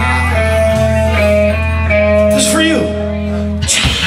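Live rock band playing amplified electric guitar and bass with drums, the guitars holding long sustained notes, with a falling pitch glide in the second half of the phrase.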